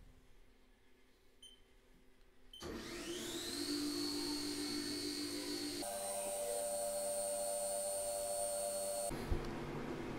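CNC mill spindle spinning up with a rising whine about two and a half seconds in, then running steadily with coolant spraying as a carbide engraving end mill cuts into a stainless Damascus blade. The sound shifts abruptly about six seconds in and stops about a second before the end.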